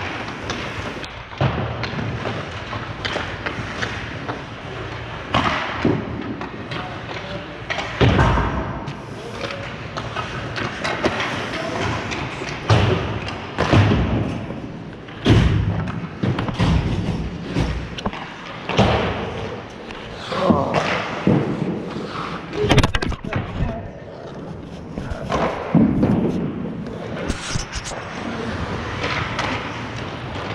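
Ice hockey practice on an indoor rink: repeated sharp thuds and clacks of pucks and sticks striking the ice and boards, over the scrape of skates on ice.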